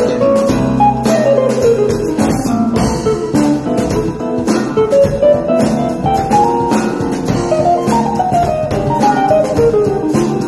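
Jazz trio playing live: electric guitar playing quick runs of notes that rise and fall, over bass guitar and drum kit.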